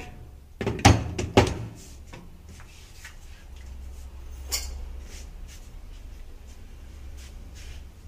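Glass blender jar knocked down onto its metal base with two sharp clunks about a second in, followed by faint handling sounds over a low steady rumble; the blender motor is not yet running.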